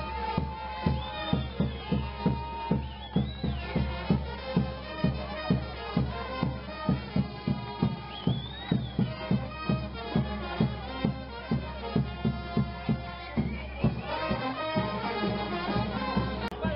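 Brass band playing a tune over a steady bass-drum beat.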